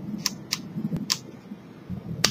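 Hand-held dental scaling instrument scraping on the teeth, its tip catching with three or four sharp clicks roughly half a second apart.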